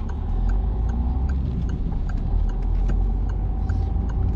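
Peugeot car's engine pulling away in first gear, a steady low rumble heard from inside the cabin. A light regular ticking, about three ticks a second, runs over it.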